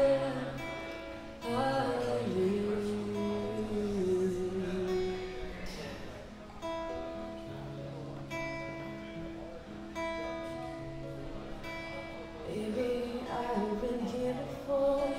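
Live acoustic guitar strumming under a woman's singing. The voice drops out for several seconds in the middle while the guitar carries on, then comes back near the end.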